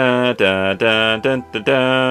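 A man's voice singing or chanting a few held syllables on a nearly flat pitch, over faint background music.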